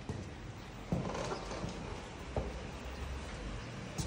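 A few soft knocks and thumps from someone walking with a handheld phone, the loudest about a second in, over a low room rumble.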